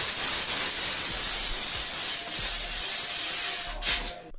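A shaken bottle of sparkling drink spraying out past a thumb held over the neck: one steady, loud hiss that cuts off suddenly just before the end.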